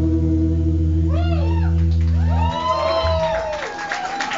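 A live rock band's final chord ringing out and stopping about two and a half seconds in, while the audience starts whooping and cheering over it from about a second in.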